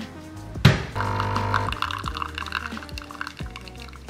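Background music with a steady beat over kitchen sounds. A sharp knock comes just under a second in, then an espresso machine runs and pours coffee into a cup.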